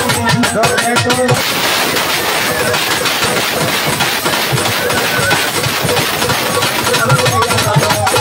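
Live Baul folk music: a man singing over drums and percussion for about the first second, then several seconds of a loud, dense noisy wash with no clear voice, and the singing and drumming come back near the end.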